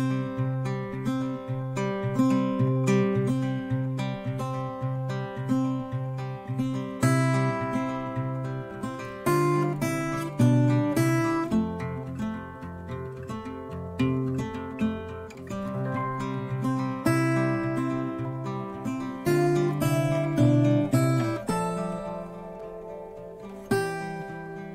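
Background music: acoustic guitar playing a steady, rhythmic plucked and strummed pattern.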